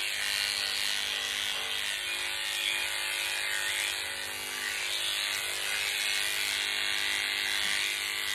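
Electric pet hair clippers running steadily as they shave a Persian cat's matted coat down close to the skin.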